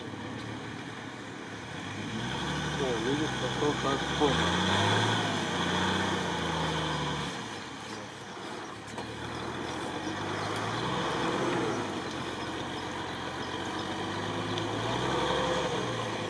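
Stock UAZ-469's engine revving up and down several times as it pulls the vehicle slowly through deep mud and water.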